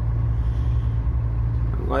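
Heavy truck's diesel engine running steadily, heard from inside the cab as a low, even drone.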